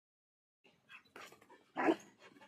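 Dutch Shepherd dog giving one short, loud bark near the end, after a few fainter short sounds.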